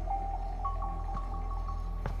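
Background music from a drama score: a low steady drone under a held high note that steps up in pitch a little over half a second in, with a few light ticks.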